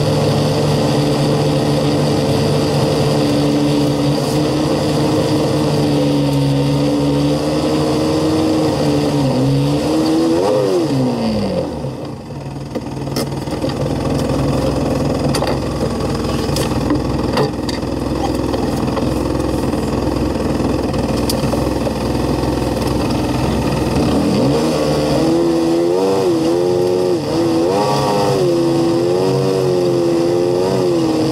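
2014 Polaris RZR 570 side-by-side's single-cylinder engine running as it drives a rough lane, heard from inside the cab. About ten seconds in the revs rise and fall sharply, then the engine settles to a low idle with a few light clicks for over ten seconds, before pulling away again with revs rising and falling.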